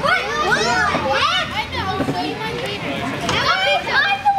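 Several children's high-pitched voices chattering and calling out over one another.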